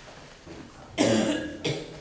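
A person coughing twice in a quiet room, about a second in: a louder first cough, then a shorter second one.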